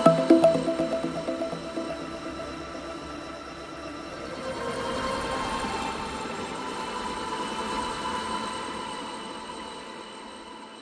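Background music: quick repeating plucked-sounding notes that fade away over the first couple of seconds, then soft held tones that swell and fade out.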